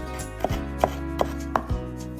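Chef's knife chopping fresh parsley and dill on a wooden cutting board: four sharp chops, about three a second, under background music.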